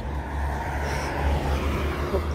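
Road traffic on the highway alongside, with a vehicle going by over a steady low rumble.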